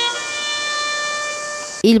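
A bugle sounding long held notes, stepping up from one note to a higher one right at the start and holding it: a bugle call for the moment of silence at the ceremony.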